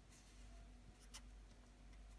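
Faint scratching of a felt-tip pen tip drawing short lines on graph paper, with a sharper brief stroke about a second in.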